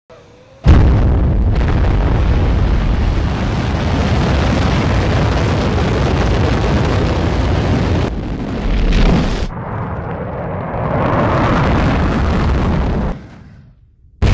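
Rocket launch roar from a Delta II lifting off: a deep rumble that starts suddenly about a second in, runs loud and steady, then drops away shortly before the end.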